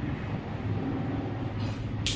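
Steady low background rumble, with a brief soft hiss near the end.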